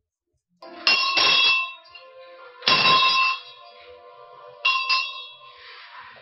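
A metal bell rung in three bursts about two seconds apart, each a few quick strikes whose tones ring on and fade, as part of a ritual.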